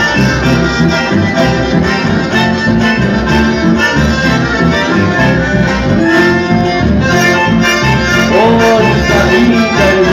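Live chamamé from a band of accordion, bandoneon, guitars and electric bass, with the accordion and bandoneon carrying the melody over a steady beat.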